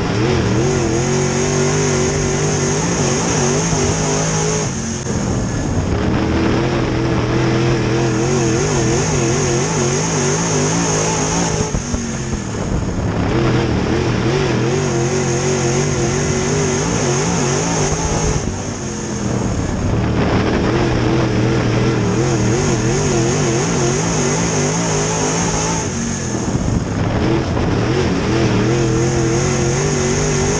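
Crate late model dirt race car's V8 engine racing hard, heard from inside the cockpit. The engine note runs steady on the straights and drops briefly four times as the driver lifts for the turns, then picks back up each lap.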